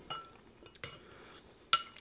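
Metal spoon clinking against a glass bowl: a few short clinks with a brief ring, the loudest near the end.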